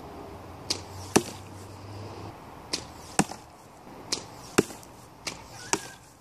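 Spector survival bow shooting four arrows in quick succession: each shot is a sharp snap of the bowstring followed about half a second later by the smack of the arrow hitting the foam target.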